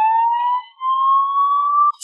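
Police siren wail: one slowly rising tone that breaks briefly about three-quarters of a second in, then holds high and stops just before the end.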